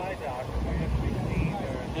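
Steady low rumble of wind on the microphone over open water, with faint voices talking in the background.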